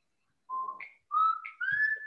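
Whistled notes: three short clear tones, each higher than the last, rising through the second half.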